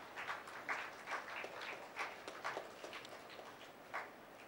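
Light, irregular taps and clicks, about four a second, in a hall.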